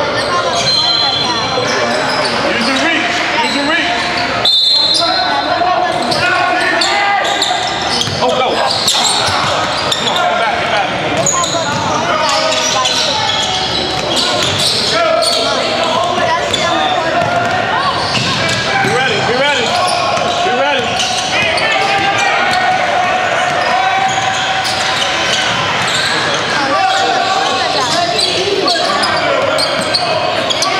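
Basketball game sounds in an echoing gym: many overlapping, indistinct voices from players and spectators, with a ball bouncing on the hardwood and a couple of short, high sneaker squeaks early on.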